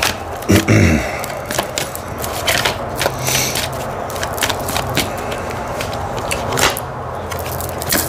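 A deck of tarot cards being shuffled by hand, the cards sliding and slapping together in irregular quick clicks and scrapes. There is a brief throat-clear just before the first second.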